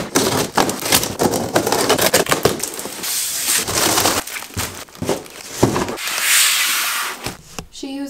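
A large cardboard shipping box being torn open. A quick run of sharp rips and snaps comes first, then longer tearing sounds about three seconds in and again near the end.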